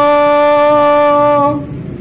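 A man's voice holding one long sung note at a steady pitch, the drawn-out last note of a chanted poem. It fades out about one and a half seconds in.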